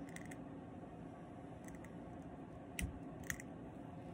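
Faint handling clicks from working a thread bobbin at a fly-tying vise: a few short ticks, two sharper ones near the end, over quiet room tone.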